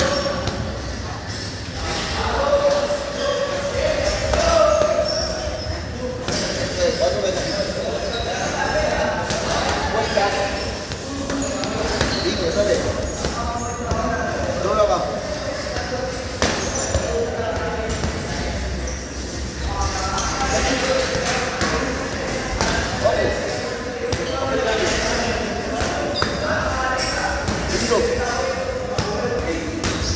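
Boxing gloves striking focus mitts, a run of sharp padded smacks in quick bursts, with voices talking in the echoing room behind them.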